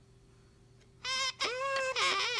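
A child's toy horn blown: about a second in, a short bright honk, then a second honk held steady at one pitch.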